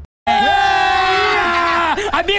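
A man's long, loud yell held on one pitch, starting suddenly after a moment of silence, with other voices shouting along beneath it.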